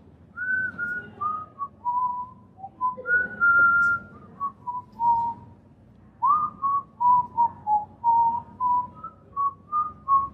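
A man whistling a tune by mouth: a string of clear notes in falling phrases, with a short break about halfway through before the melody resumes.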